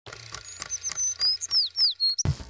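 Title-card sound effects: a run of thin, high chirps, the last few falling in pitch, over regular clicks about three a second and a low steady hum.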